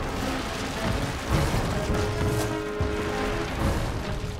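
Background cartoon music over a rumbling, crackling noise effect with irregular low thumps.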